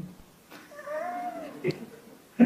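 A faint, high, drawn-out voice-like call lasting about a second, its pitch rising and then falling, followed by a short click.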